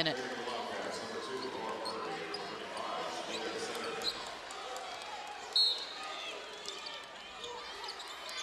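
Basketball arena ambience: a steady crowd murmur with a basketball bouncing on the hardwood court. A brief high-pitched squeak comes about five and a half seconds in.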